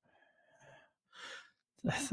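Faint breaths between lines of speech, the second a soft sigh-like exhale about a second in, then a voice starting to speak near the end.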